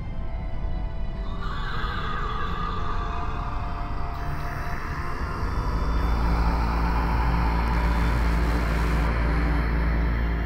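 Ominous horror film score: a harsh, wailing high texture comes in about a second in over a deep drone, which swells louder about halfway through.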